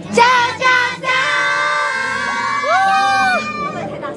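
A group of young women shouting a team cheer together: a few short rising shouts, then one long drawn-out shout lasting over two seconds. Loud enough that someone calls it too loud.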